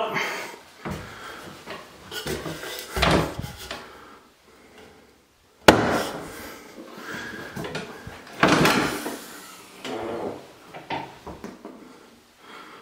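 A wooden folding attic ladder being folded up and pushed into the ceiling: a series of knocks, creaks and rattles from its wooden sections and metal hinges and springs, the sharpest a sudden knock about six seconds in.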